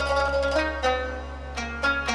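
Instrumental music: a quick plucked-string melody with a zither-like sound, played over a held low bass note.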